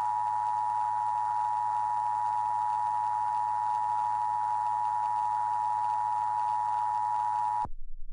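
Emergency Alert System attention signal: two steady tones sounding together as one unbroken alarm, announcing an emergency bulletin. It cuts off suddenly near the end.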